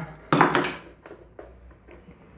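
A short metallic clatter of a hand tool about a third of a second in, fading within half a second, followed by faint handling sounds.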